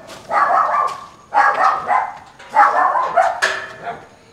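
A dog barking in three loud bouts about a second apart, with a short sharp sound near the end.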